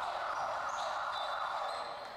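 A steady buzzing horn sound, like an arena buzzer, lasting about two seconds and fading near the end.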